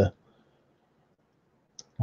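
Near silence, broken by a single short click shortly before speech resumes.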